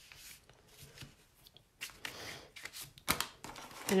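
Scored cardstock being folded and pressed flat by hand: soft, intermittent paper rustling and sliding, with a sharper crackle about three seconds in.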